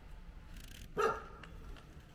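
A dog barks once, a short single bark about a second in.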